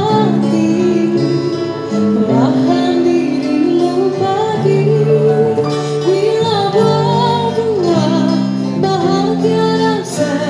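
Live band playing a song: a woman sings a melody into a microphone over keyboard and guitar accompaniment.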